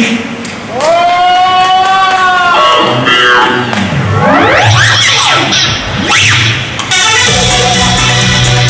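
A live band playing the opening of a disco-pop song. A held note comes first, then sweeping rising and falling pitch glides, and a steady bass and beat come in about seven seconds in.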